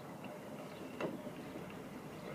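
A single light knock from the hanging gyro wheel's axle and pivot about a second in, over a faint even background, as the axle is tipped up.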